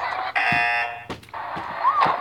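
Game-show elimination buzzer sound effect: one harsh buzz about half a second long, signalling that a contestant is out.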